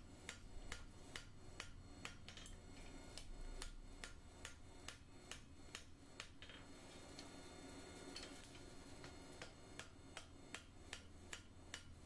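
Light, quick taps of a mallet working a thin bar of hot iron on the anvil, faint and about three a second.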